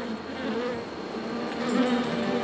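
A swarm of yellow jackets buzzing: a steady drone that wavers in pitch.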